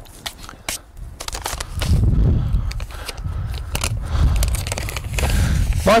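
Scrapes and crunches of a steel garden fork being worked out of loose, stony soil, a few sharp clicks in the first second. From about two seconds in, an uneven low rumble follows.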